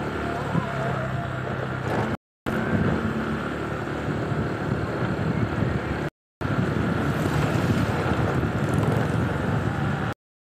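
A vehicle's engine runs steadily at low road speed, with road and wind noise. The sound cuts out completely for a moment about two seconds in and again about six seconds in.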